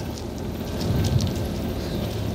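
Neoplan N122/3 Skyliner double-deck coach's diesel engine idling, a steady low rumble under a hiss of noise.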